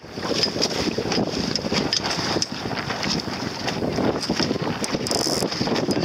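Wind buffeting the microphone, over the rush and splash of water, heard from a small boat under way on the sea.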